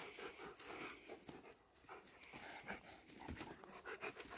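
Dogs panting softly and irregularly while they play-wrestle, with light scuffling on the dirt.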